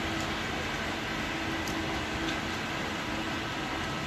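Steady outdoor background noise with a faint low hum running under it and a few faint ticks.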